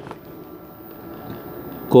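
Low, steady room noise while the MIG torch is held ready at the joint, before the arc is struck; a man's voice comes in at the very end.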